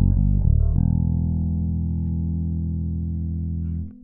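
A five-string electric bass, a Maruszczyk Elwood 5a with Nordstrand Dual Coil 5 pickups and active Delano Sonar 3 MS/E electronics, played solo. A quick run of plucked notes comes first, then a note is left to ring for about three seconds and is damped suddenly just before the end.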